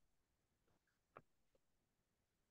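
Near silence, with one faint click a little over a second in.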